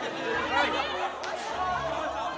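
Several voices talking and calling out over one another in a lively group chatter. A low steady note comes in about one and a half seconds in, as music starts.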